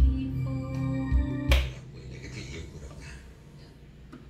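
Music played through Pioneer CS-7100 loudspeakers driven by a Nikko 3035 receiver, with held notes and deep bass thumps. It stops with a sharp click about one and a half seconds in, and only a low background is left.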